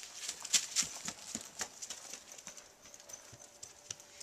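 Footsteps on a hard surface, a few sharp steps a second, growing fainter and sparser toward the end.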